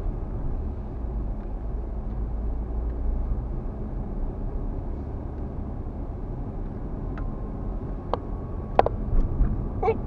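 Steady low rumble of a car driving, engine and road noise heard from inside the cabin. A few light clicks come in the last three seconds.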